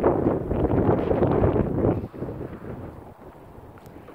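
Wind buffeting the microphone in gusts, loud for about two seconds and then easing off abruptly.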